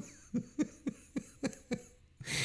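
A man laughing quietly to himself: a run of short, breathy chuckles, about seven in two seconds.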